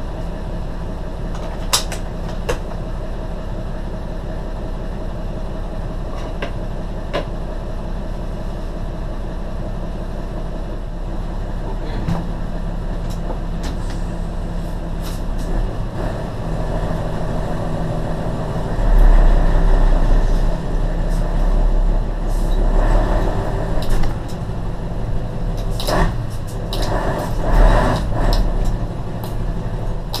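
Mercedes truck's diesel engine idling, heard from inside the cab, with a few sharp clicks in the first seconds. About two-thirds of the way through, the engine grows louder and rises and falls as the truck pulls away under load.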